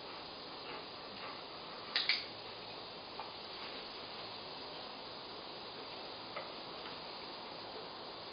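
A dog-training clicker gives one sharp double click (press and release) about two seconds in, marking the dog's behaviour for a reward. A few fainter ticks follow over a steady background hiss.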